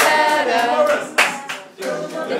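A group of voices singing a melody, with a sharp hand clap about a second in.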